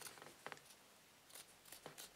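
A few faint snips of a pair of scissors cutting white cloth, short quiet cuts spaced unevenly across the moment.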